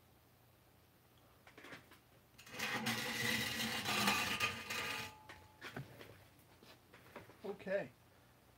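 Handling noise of a camera being picked up and turned: a few clicks, then about three seconds of loud rubbing and scraping on the microphone, tapering to lighter knocks. A man's voice is heard briefly near the end.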